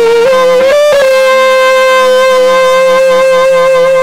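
Saxophone played with a growl: the player hums a low steady note into the horn while blowing, giving a rough, raspy tone. A few quick rising notes in the first second lead into one long held note.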